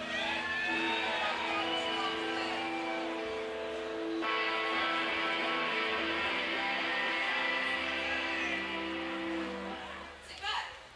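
Electric guitars ringing out sustained chords through a live PA. The chord changes about four seconds in, and the playing stops just before the end.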